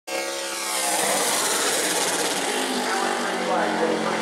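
Super late model stock car's V8 engine running on track, its pitch falling over the first second and then holding steady.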